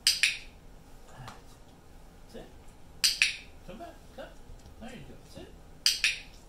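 Handheld dog-training clicker clicked three times, about three seconds apart, each a sharp double click, marking the puppy's correct behaviour before a food reward.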